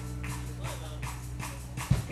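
Rock band playing live through a PA in a quiet passage: sustained guitar notes and amp hum under light, even ticks, broken near the end by a loud drum hit.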